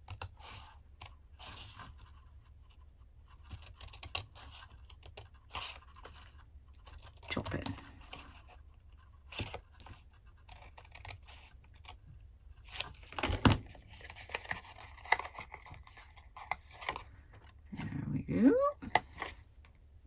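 Small scissors snipping into cardstock in short, separate cuts, with the crackle of the card being handled between cuts. The loudest is a single sharp click a little past the middle.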